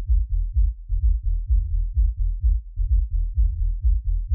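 A house track's kick drum and sub-bass playing through a low-pass filter, so only the deep low end is left: a steady, evenly pulsing groove of low thuds.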